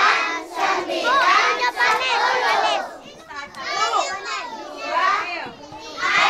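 A crowd of young children's voices, many talking and calling out over one another, with a brief lull about three seconds in.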